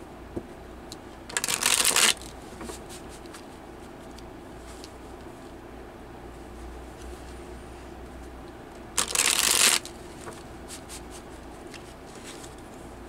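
A tarot deck being riffle-shuffled by hand: two short riffles about seven seconds apart, with faint taps and clicks of the cards being handled and squared between them.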